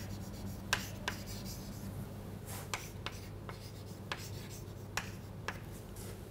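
Chalk on a chalkboard while words are written: a series of short, irregular taps and light scratches, over a faint steady low hum.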